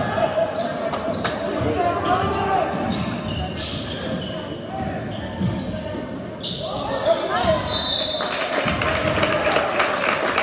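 Basketball game in a school gym: a ball dribbling and bouncing on the hardwood under spectators' chatter. About eight seconds in a short referee's whistle sounds, and the crowd noise grows louder after it.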